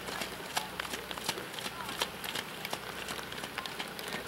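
Rain on a wet outdoor arena: a steady hiss with many irregular sharp drip ticks, some landing close to the microphone. The dull footfalls of a horse trotting on soaked sand footing lie faintly under it.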